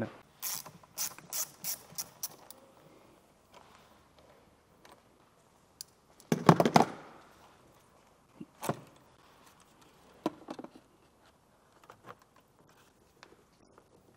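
Socket ratchet clicking in quick runs as a car battery terminal clamp nut is loosened to disconnect the battery, with a louder clatter about six seconds in and a few single clicks and knocks after.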